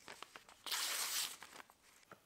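A freshly sharpened plane iron slicing through a sheet of notebook paper: a few small ticks, then a short papery hiss of the cut about two-thirds of a second in. The clean slice is a sharpness test of the newly honed edge.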